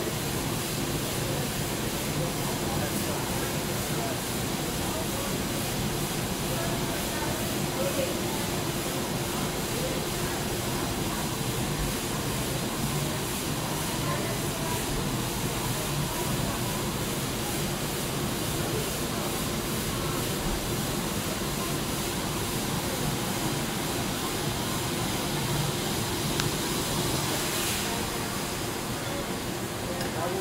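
Steady hiss from a glass siphon coffee brewer heated by a halogen beam heater, with the lower globe kept at the boil under the brewing coffee. The hiss eases slightly near the end.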